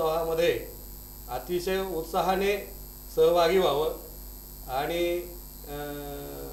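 A man talking in short phrases over a steady electrical hum.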